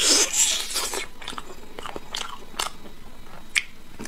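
A person biting and chewing braised pork off a large bone: a loud bite at the start, then chewing with scattered small clicks and one sharper click a little before the end.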